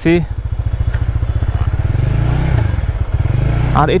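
Honda CBR150R's single-cylinder engine running at low revs as the bike is ridden, its exhaust beat steady and picking up a little about halfway through.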